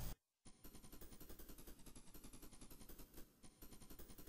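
Near silence, with only a faint rapid crackle.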